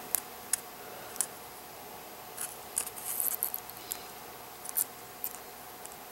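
Small plastic and metal clicks and light scratches as a model train truck is pulled apart by hand: faint, scattered ticks with a brief cluster near the middle.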